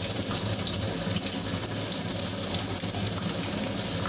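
Sliced onions sizzling in hot mustard oil in an iron kadai: a steady frying hiss.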